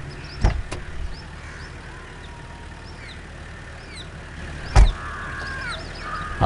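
A jeep door opening with a faint click or two, then slammed shut about five seconds in with one heavy thump. Small birds chirp faintly in the background.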